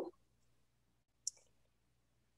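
Near silence: quiet room tone with a faint low hum, broken once a little over a second in by a single short, sharp click.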